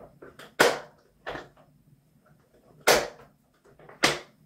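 Office chair armrest swivelling on its pivot and clicking into its rotation detents: two sharp clicks about two seconds apart, with a fainter one between.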